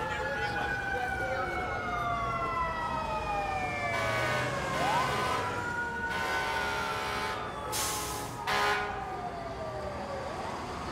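Emergency vehicle siren wailing in slow rising and falling sweeps, about one rise and fall every five seconds, over steady city traffic. Two brief loud bursts come near the end.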